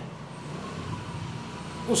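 Steady low background rumble with a faint thin high tone running through it.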